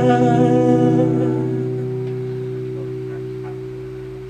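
Acoustic guitar's last strummed chord ringing out and slowly fading, with a man's final sung note held with vibrato over it for the first second or so.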